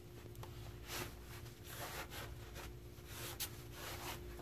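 Faint, intermittent rubbing of a cloth rag wiping down drum-brake shoes being cleaned of oil and residue, a few short scuffs about a second apart, over a faint steady hum.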